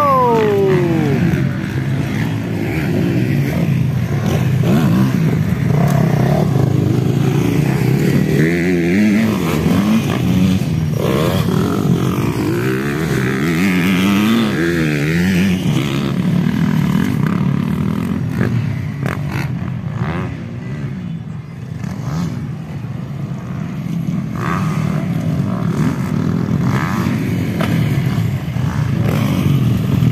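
Motocross dirt bike engines racing, their revs rising and falling unevenly. Right at the start one engine's pitch falls steeply as it drops off the throttle.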